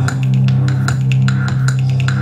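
Live electronic music in an instrumental passage: a steady, deep held bass note under a quick, even beat of crisp high ticks, with no singing.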